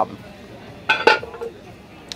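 A single metallic clink on a cast-iron Dutch oven about a second in, with a short ring after it.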